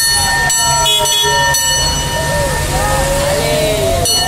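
The bell on a vintage fire engine clangs a few times in the first second and a half, and its ringing dies away by about two seconds in, over a steady low engine rumble. Through it a siren slowly winds down in pitch and back up again.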